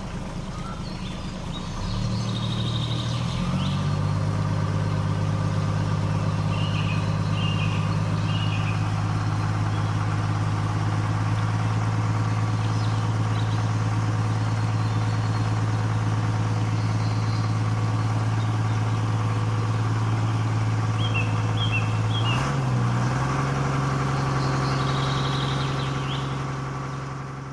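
Steady low engine drone, like an idling diesel, that settles in during the first few seconds and steps to a slightly higher pitch about 22 seconds in. A few short high chirps sound over it, around seven and twenty-one seconds in.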